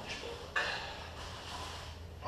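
Two grapplers shifting on a foam mat: a sudden scuff and rustle of bodies and clothing about half a second in, fading over the next second, over a steady low hum.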